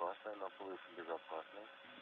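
Speech only: a faint voice talking over a radio communications loop, thin and telephone-like.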